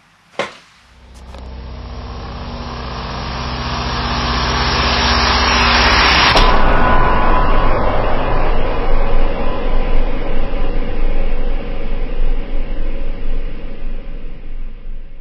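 Logo-animation sound effect: a rising whoosh that swells for about five seconds to a hit, then a loud, rough rumble that carries on.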